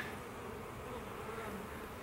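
Faint, steady buzzing of a honey bee colony crawling over a frame pulled from an open hive.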